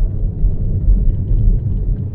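Steady low rumble of tyre and road noise heard inside a Tesla Model 3's cabin as it drives on a ploughed, snow-covered road, with no engine sound.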